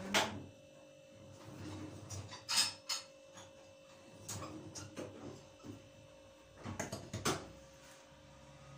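Scattered knocks, clicks and clatter of kitchen things being handled as a stick blender is fetched and set up, with the loudest knocks about two and a half seconds in and near the end, over a faint steady hum.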